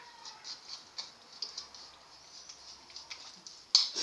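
A spoon scraping and clicking against a plastic bowl while stirring a gritty sugar-and-oil scrub paste: an uneven run of soft ticks and scrapes, with one sharper knock near the end.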